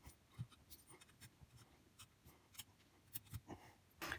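Faint, scattered clicks of quarters being pushed between the coils of a steel tension spring bent over in a vise, with a small cluster of clicks near the end.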